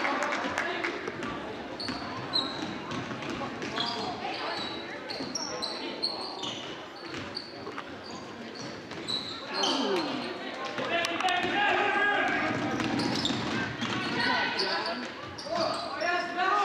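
Basketball game in a gym: sneakers squeaking on the hardwood floor and the ball bouncing, with many short high squeaks through the first part. Spectators' voices grow louder and shout from about ten seconds in.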